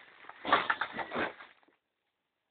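Plastic bags crinkling and rustling as they are handled, in an irregular run of crackles about half a second in that stops after about a second.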